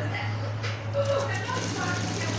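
Steady low hum of an industrial sewing machine's motor running, with faint voices in the background.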